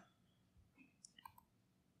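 Near silence, broken by a few faint clicks about a second in: the presentation slide being advanced.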